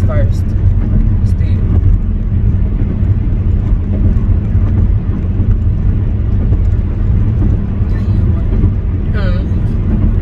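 Steady low rumble of road and engine noise heard inside a moving car's cabin.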